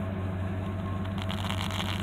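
The 1969 Buick Electra's V8 engine idling steadily, heard from inside the cabin as a low, even hum with faint small clicks.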